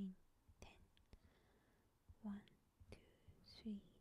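Stylus tip tapping and sliding on a tablet's glass screen as kanji strokes are written, with a few sharp clicks. A woman's soft voice sounds twice in the second half.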